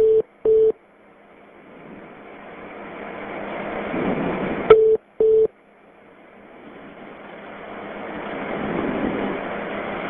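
A telephone line on hold: two short low beeps half a second apart, heard twice about five seconds apart, each pair opening with a sharp click. Between the pairs a hiss of line noise keeps building up.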